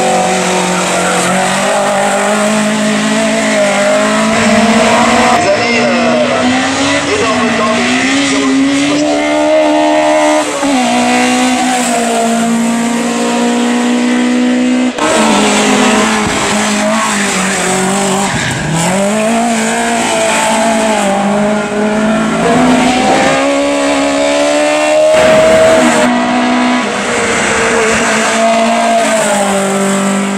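Small hatchback race car's engine driven hard at high revs, its pitch climbing through each gear and dropping back at each shift or lift, over several separate runs.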